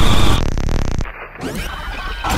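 Loud, chaotic trailer sound effects: a dense noise with a steady high tone breaks into a rapid stuttering electronic static glitch about half a second in. The glitch cuts off abruptly about a second in and drops to quieter noise.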